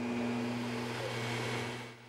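Mattress-cleaning vacuum machine with an ultraviolet lamp running as it is pushed over a mattress: a steady motor hum with a rush of air, fading out near the end.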